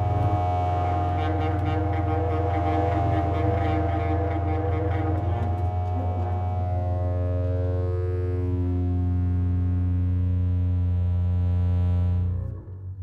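Freely improvised electro-acoustic chamber music for bowed double bass, saxophone and theremin with synthesizer. A steady low drone sits under layered sustained tones that are busy and textured for the first half, then settle into long held notes that step in pitch.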